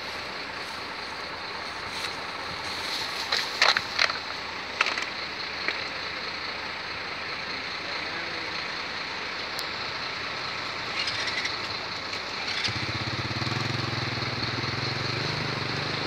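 Steady outdoor background noise with a few brief knocks about three to five seconds in; a few seconds before the end, a motor vehicle's engine comes in as a steady low hum.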